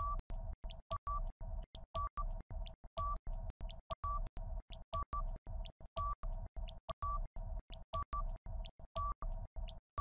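Quiz countdown timer sound effect: fast, even ticking, several ticks a second, over a steady low tone, with a short higher beep about once a second.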